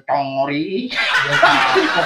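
A man's voice says a few words, then from about a second in a group of men laugh and chuckle together.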